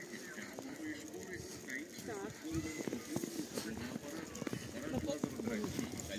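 Several people's voices talking, too indistinct to make out, over footsteps in fresh snow.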